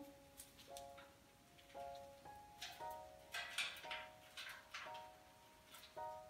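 Quiet background music of soft, sustained keyboard-like notes, a new note about every half second to a second. Short faint crackles and rustles of hands pulling apart the taro's root ball and soil are scattered through it.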